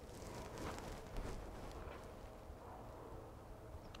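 Faint outdoor background with a light rustle about a second in.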